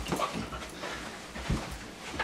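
Puppy panting and making short noises while it tugs on a rope toy, with a low thump about a second and a half in.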